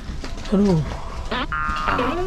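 A man's short wordless vocal sounds, falling in pitch, then edited-in music with steady held tones starting about a second and a half in.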